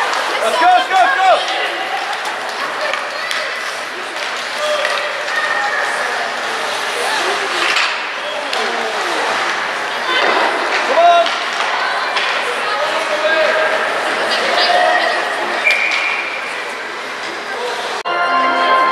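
Ice hockey arena ambience: spectators' voices shouting and calling out, echoing in the rink, with scattered knocks of sticks and puck on the ice. Near the end a short, steady whistle sounds, the referee stopping play.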